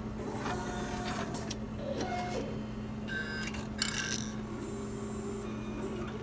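Automated histology slide-handling machine running: a steady low hum with short motor whirs as its suction-cup arm moves over the slide rack, and one sharp click about four seconds in.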